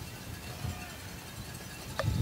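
Faint open-air stadium ambience: a steady low rumble with faint distant voices.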